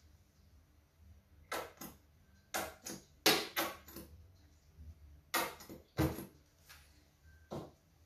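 A paintbrush working on canvas and palette: a series of short, scratchy strokes at irregular intervals.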